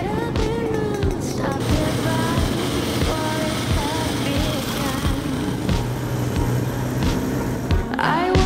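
Background pop song with singing and a steady beat, mixed with the running of vintage motorcycle engines riding past.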